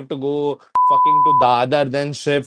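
A single steady 1 kHz bleep, about two-thirds of a second long and starting with a click, cutting into a man's talk: a censor bleep laid over a word.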